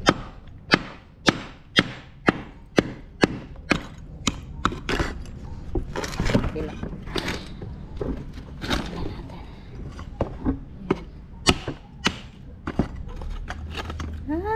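Terracotta clay pot being broken apart: a run of sharp knocks about two a second over the first four seconds, then irregular cracks and scrapes as the pot shards are worked loose.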